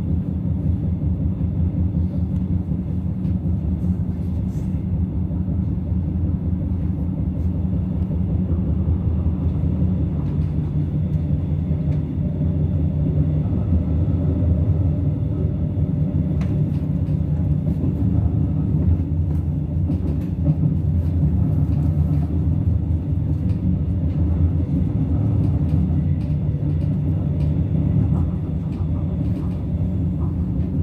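Israel Railways passenger train running along the track, heard from inside the carriage: a steady low rumble with occasional faint ticks and rattles.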